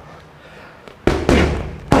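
Boxing gloves smacking into focus mitts: a quick pair of sharp punch impacts about a second in, and another strike right at the end.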